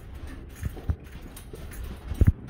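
Footsteps on a carpeted hallway floor: two soft, dull thumps just before a second in, over a steady low rumble.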